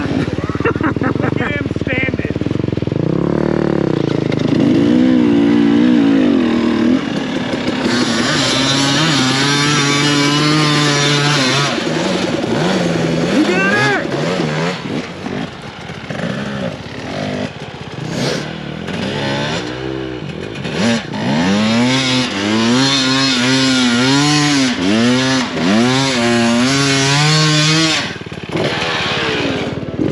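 Dirt bike engines idling and revving, the pitch rising and falling over and over with throttle blips.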